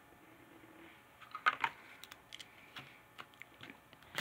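Faint clicks and taps of a Scentsy wax bar's plastic clamshell being handled: a small cluster about one and a half seconds in, then a few scattered lighter ticks.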